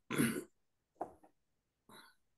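A man clearing his throat: a short, loud rasp at the start, then a smaller sound about a second in.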